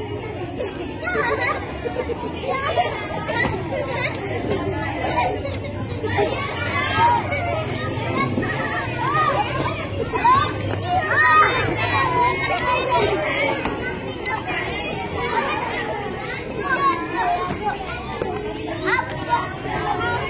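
A group of young children talking and calling out over one another, with a laugh a couple of seconds in and louder shouts around the middle.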